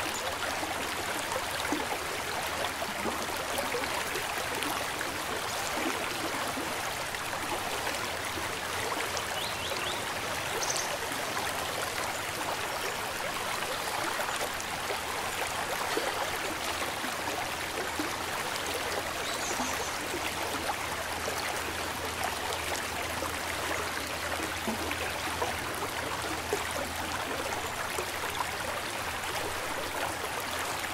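Steady rushing of a shallow river flowing fast over riffles, with no let-up.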